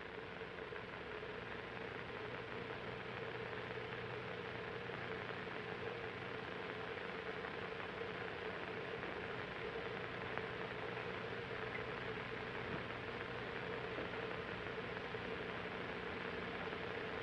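Quiet, steady hiss with a faint hum, the background noise of an old film soundtrack, with nothing else heard.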